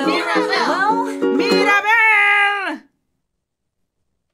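A woman singing over a strummed ukulele. The strumming stops and she holds one long final note, which dips in pitch and cuts off abruptly to dead silence a little under three seconds in.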